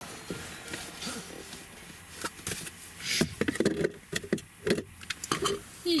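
A dog giving several short, low grumbling 'urrfs' as it gets up, among rustling and knocks.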